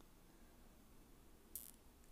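Near silence: faint room tone, with one brief soft hiss about one and a half seconds in.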